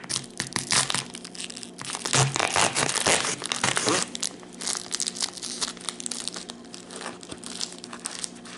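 Clear plastic wrapper on a salami stick crinkling and tearing as a knife cuts it open. The crinkling is densest and loudest for a couple of seconds in the middle, then thins to lighter crackling as the plastic is pulled apart.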